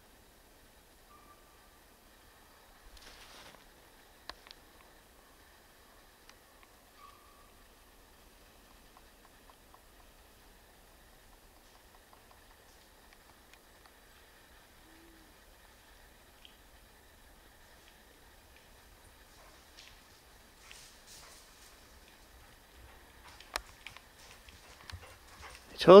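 Very quiet forest with a few faint scattered clicks and two short faint high chirps. Near the end a dog runs through dry leaf litter toward the microphone, its footfalls and rustling growing louder, and a man's voice starts right at the close.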